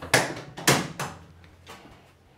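A 1969 Ford Mustang Mach 1's bonnet being unlatched and lifted: three sharp knocks in quick succession in the first second, then a fainter one near the end.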